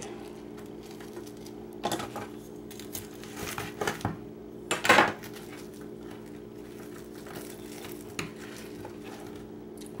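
Kitchen knife and utensils clinking and knocking against the counter and a metal pan a few times while a toasted grilled cheese sandwich is cut and pulled apart. The loudest knock comes about five seconds in, over a steady low hum.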